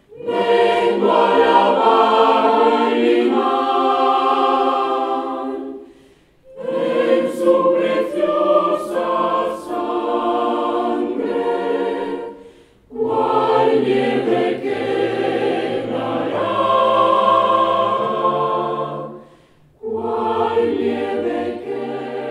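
Mixed choir of women and men singing in four-part phrases of about six seconds each, with brief pauses for breath between them.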